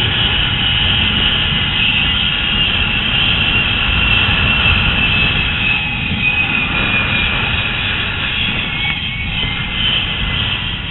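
Zipline trolley pulleys running fast along the steel cable, a continuous high whine that sinks slightly in pitch in the second half, over heavy wind rumble on the microphone.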